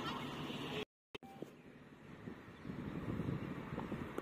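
Open-air ground ambience with a steady background din. Just under a second in it cuts off abruptly into a brief total silence at a video edit, then comes back quieter and slowly rises.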